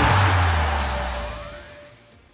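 A broadcast transition sound: a noisy whoosh over a deep bass tone, fading away over about two seconds.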